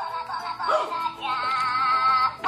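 Battery-powered Minion toy playing its built-in song when its button is pressed: a cartoonish electronic singing voice over music, ending in a long held note.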